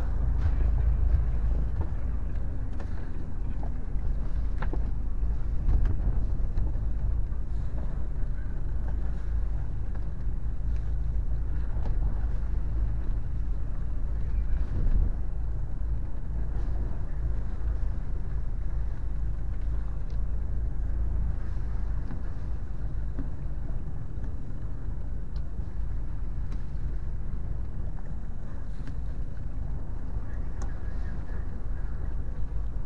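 A small wooden fishing boat's engine running steadily, a low even drone that does not change.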